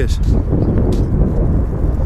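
Wind buffeting the microphone: a loud, steady low rumble, with one faint click about a second in.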